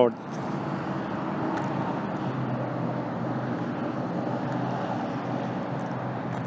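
Steady rushing background noise with a faint low hum beneath it, holding an even level throughout.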